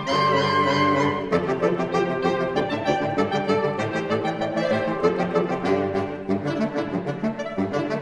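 Saxophone quartet playing a classical piece: several saxophones sustaining notes in harmony, with vibrato on the high line in the first second.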